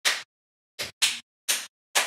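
Hand claps, about five in two seconds at uneven spacing, each short and sharp with silence between.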